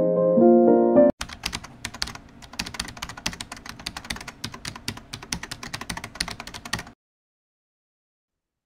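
Piano music that cuts off abruptly about a second in, followed by rapid, irregular computer-keyboard typing clicks for about six seconds that stop suddenly.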